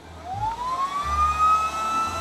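An air mattress's electric air pump switching on: its whine rises in pitch for about a second and a half as the motor spins up, then holds steady as it starts inflating the mattress.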